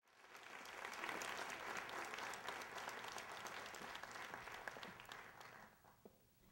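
Audience applauding: a dense patter of many hands clapping that builds over the first second and dies away near the end.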